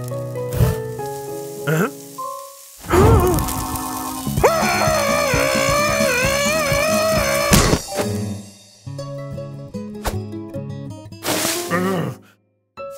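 Cartoon music score with sound effects: a sudden loud burst about three seconds in, then a cartoon character's long, wavering yell lasting about three seconds, and another short burst of noise near the end.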